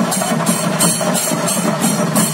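A traditional Kerala temple percussion ensemble of chenda drums and hand cymbals playing a fast, steady rhythm, the cymbal clashes coming about three times a second over continuous drumming.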